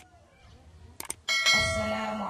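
Subscribe-button animation sound effect: a mouse click, then two quick clicks about a second in, followed by a ringing bell chime.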